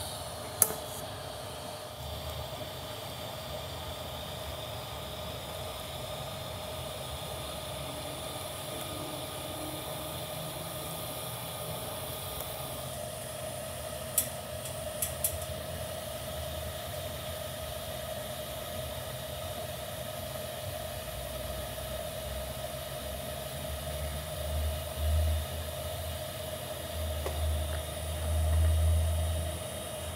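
TIG arc on stainless steel, DC negative at about 52 amps under straight argon from an Everlast PowerTIG 210EXT: a steady hiss with a faint buzzing tone while the star merge piece is welded into a four-into-one header collector. There are a few brief clicks partway through and some low rumbles near the end.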